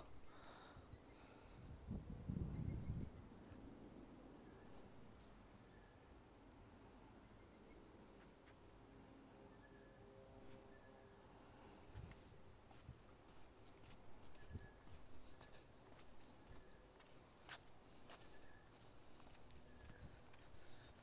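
Steady, high-pitched insect chorus of crickets, growing somewhat louder in the second half. A brief low rumble about two seconds in.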